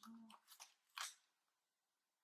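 Faint rustling and crinkling of paper as gloved hands press and smooth a cut-out picture, glued with spray mount, onto a collage. A short, sharper crinkle comes about a second in, then it goes near silent.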